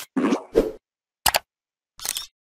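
A quick series of short cartoon-style pop sound effects, about four in two seconds, going with an animated logo as its pieces pop into place.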